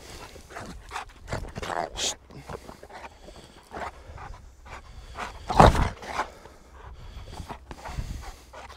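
Dogue de Bordeaux panting hard after rough play, in quick irregular breaths, with one louder burst of noise a little past halfway.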